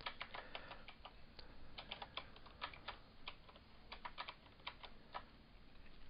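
Computer keyboard typing: quiet, irregular keystroke clicks, several a second, as a short command is typed.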